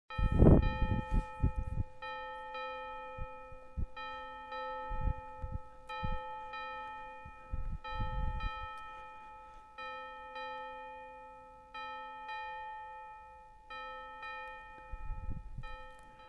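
Church bell struck repeatedly, about two strokes a second, each stroke ringing on over the next. Low thumps are mixed in at several points and are the loudest sounds at moments.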